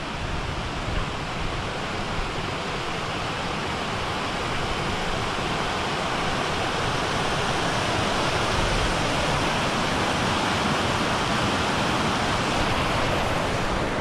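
Fast mountain stream rushing over rocks in white water, a steady hiss that grows a little louder partway through.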